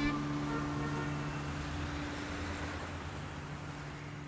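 A title-sequence sound effect slowly fading away: an even whooshing noise over a steady low hum, left ringing after the intro music cuts off.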